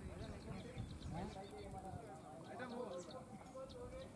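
Faint, distant men's voices calling, with one drawn-out call near the end.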